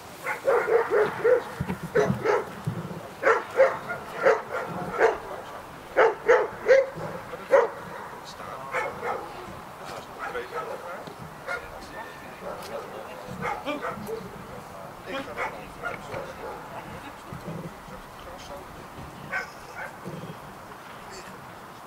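German shepherd dog giving a rapid series of short barks, about two to three a second, loudest in the first eight seconds, then fainter and more spaced out.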